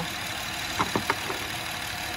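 Honda Odyssey V6 engine idling steadily, with a few light clicks about a second in.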